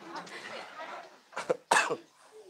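A person coughing: two short, sharp coughs close together about one and a half seconds in, after a second of soft breathy sound.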